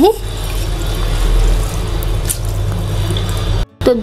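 Water swishing and sloshing as a hand stirs dal and rice in a glass bowl of water, over background music. The sound stops briefly shortly before the end.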